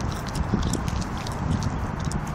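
Wind rumbling on a handheld camera's microphone, with irregular small clicks and knocks from handling.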